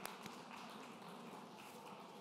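Faint applause from an audience, an even patter of many hands clapping.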